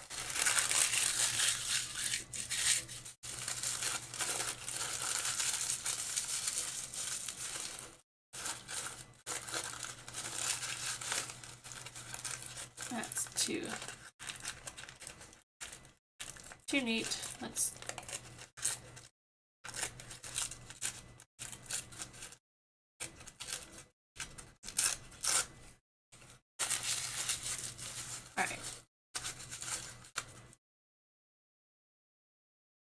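Thin printed paper being handled, torn and crumpled by hand, in stop-start bursts of crinkling with brief silent gaps.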